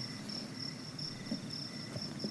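Crickets chirping, a steady high pulsing trill.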